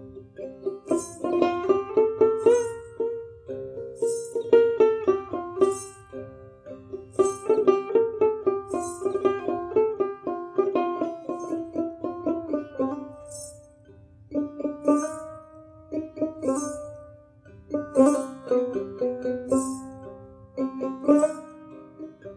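Bengali folk music led by a plucked string instrument playing a quick melody, with a light high tick keeping the beat about every second and a half.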